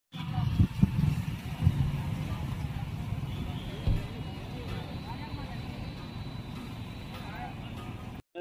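Roadside traffic noise: vehicle engines running with a low rumble, and people talking in the background. It is loudest at the start and eases off.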